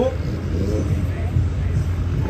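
Steady low rumble of idling car engines, with a voice talking faintly over it early on.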